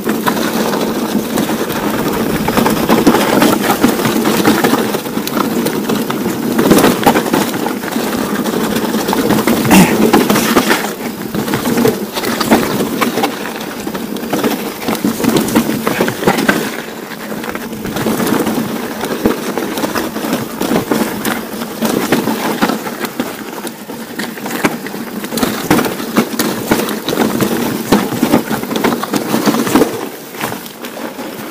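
Steel hardtail mountain bike rolling down rocky singletrack: tyres crunching over loose stones and the bike rattling continuously with dense clicks and knocks over the rough ground.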